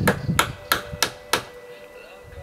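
Hammer blows in quick succession: four or five sharp strikes, about three a second, that stop about halfway through.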